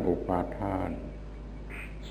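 A man's voice speaking Thai for about the first second, then a pause in which only a steady low hum of the recording remains.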